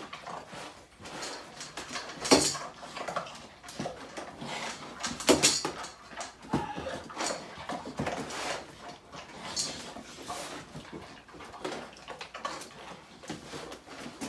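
Great Danes at feeding time: irregular clicks, clinks and knocks of dogs moving around and eating dry kibble from metal bowls, with a few sharper knocks about two and five seconds in.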